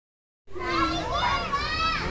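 Young children's high-pitched voices talking and exclaiming excitedly, starting about half a second in, over a low background rumble.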